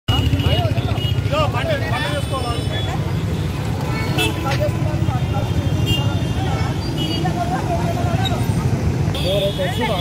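Street traffic with a steady low engine rumble, under several people's voices talking loudly over one another in a heated argument.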